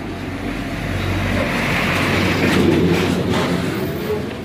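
A vehicle going past, its rumbling noise swelling to a peak late on and then falling away.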